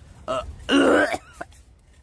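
A man clearing his throat with raw egg in his mouth: a short grunt, then a longer, louder, rasping hack.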